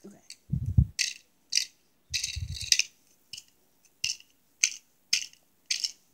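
Plastic toy pieces clicking and rattling as they are handled, with a run of sharp clicks about every half second and a couple of dull low thumps.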